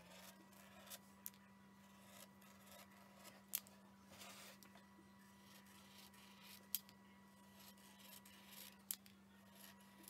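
Near silence: the faint scratch of a paint-marker tip drawing lines on a painted wooden cutout, with a few soft clicks and a faint steady low hum.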